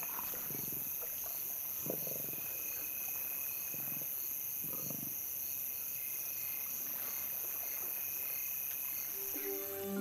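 Lions growling a few times in short low bursts while feeding on a carcass, over a steady chorus of night insects such as crickets.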